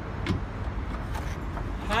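Steady low engine rumble, with a few light knocks from the sweeper's plastic hopper cover being handled.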